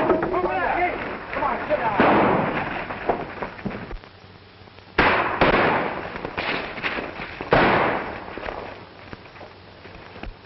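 Gunshots on an old film soundtrack: four sharp reports, about two, five and seven and a half seconds in, two of them close together near five seconds, each ringing out with a long echo. Shouting voices come just before the first shot.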